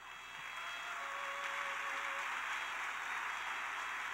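Congregation applauding steadily, with a faint held note underneath.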